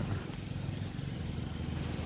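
A low, steady engine hum from a motor running in the background.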